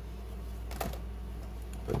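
A few faint clicks from handling a plastic blister-packed toy car, one a little under a second in and another near the end, over a low steady hum.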